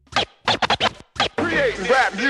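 Hip-hop DJ scratching a record on a turntable: a quick run of sharp cuts, then from about one and a half seconds in a sample pulled back and forth in rising and falling sweeps.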